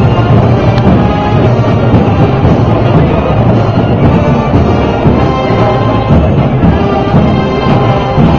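Live parade band playing a marcha mora, loud and continuous, with held instrumental tones over deep drums.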